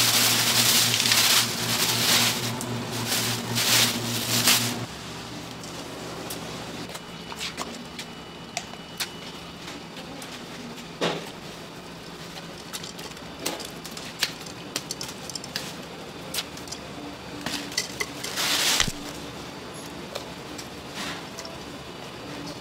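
Plastic bags rustling loudly as gloved hands pull them apart in a crate, over a steady low hum, for about the first five seconds. The rest is quieter kitchen handling: scattered light clicks and knocks while a whole chicken is stuffed, with another short rustle near the end.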